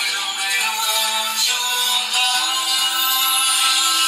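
Recorded music playing, with a long held note through the second half.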